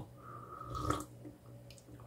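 A person taking a short sip of espresso, with a brief slurp about a second in.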